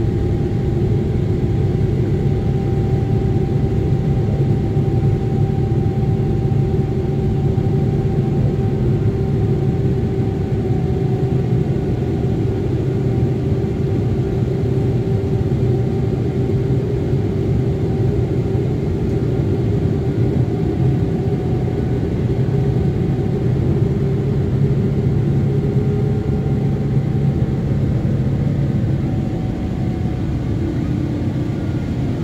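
Boeing 777-300ER cabin noise during the climb after take-off: a steady low rumble from the GE90 engines and the airflow, heard from inside the cabin, with faint steady whining tones above it.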